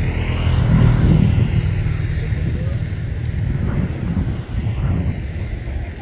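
A motor vehicle passing close by, its engine and road noise a low rumble that is loudest about a second in and then slowly fades away.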